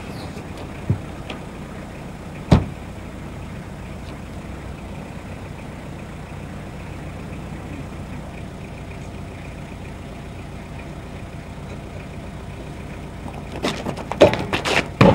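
Car engine idling steadily with a low, even hum. A short click comes about a second in and a sharp knock at about two and a half seconds, with a few more knocks near the end.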